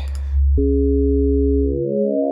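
U-he Hive 2 software synth sounding a steady low sine-wave tone. About half a second in, a click, and the sound becomes a chord of several steady pitches as the 'Additive Chords' wavetable is loaded. Near the end the low note drops out and the chord pitches shift.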